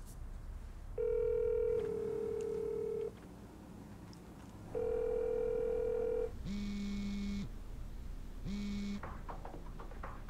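An outgoing phone call ringing out: the steady two-note ringback tone sounds twice in the caller's earpiece. Then the called mobile phone buzzes twice, once long and once short. A few faint clicks follow near the end as the phone is handled.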